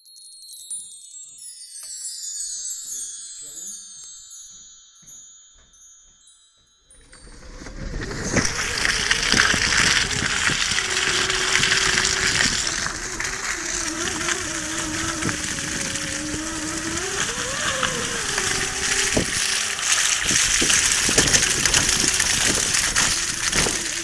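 A short chime-like title jingle of falling tones. About seven seconds in it gives way to the tyre of a Pulí 2E electric microcar churning through wet slush, a loud steady noise, with a whine underneath that rises and falls in pitch as the car changes speed.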